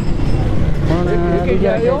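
Steady low rumble of street traffic and vehicle engines, with a man's voice talking over it from about halfway through.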